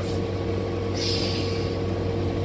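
City bus engine idling with a steady hum, and a short hiss of air that starts about a second in and lasts almost a second.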